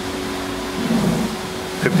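Steady room noise: an even hiss with a low steady hum, and a brief low murmur about a second in.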